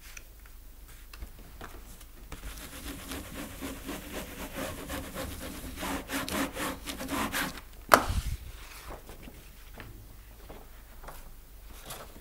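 A hand rubbing and sliding a printed sheet of paper against a glass-topped table, a rough, rhythmic scraping that builds over a few seconds. Just before eight seconds in there is a single sharp knock, the loudest sound, followed by lighter handling noise.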